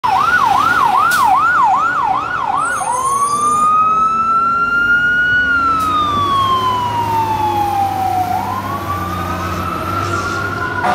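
Fire engine siren on an emergency run: a fast yelp of about three sweeps a second, switching a few seconds in to a slow wail that rises, falls and begins to rise again. The truck's engine runs low underneath in the second half as it passes.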